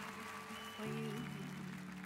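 Slow, soft ballad accompaniment with held chords, playing between sung lines.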